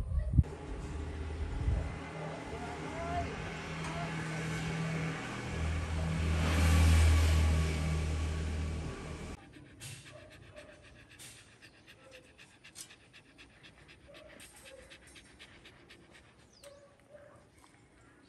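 A motor vehicle's engine hum swells to its loudest about seven seconds in as it passes, then cuts off suddenly. After that, a corgi pants quietly, with soft scattered clicks.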